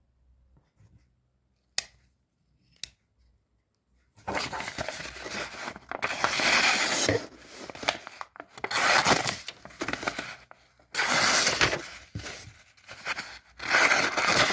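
Two short clicks, then the multitool's knife blade slicing through a sheet of paper in several long strokes, the paper rasping and tearing as it goes. The blade is fairly sharp but snags the paper slightly.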